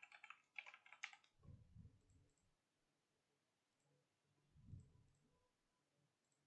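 Faint computer keyboard typing, a quick run of key clicks in the first second, then near silence broken by two faint low thumps.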